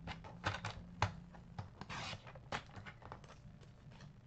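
Paper trimmer cutting white cardstock: a string of clicks and taps as the paper is set against the rail, and short scraping rasps of the blade carriage being run along the track, the longest about two seconds in.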